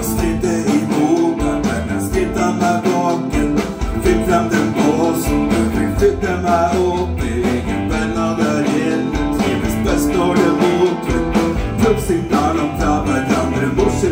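Live rock band playing: a male singer's vocal over electric guitar and keyboard, with a steady beat.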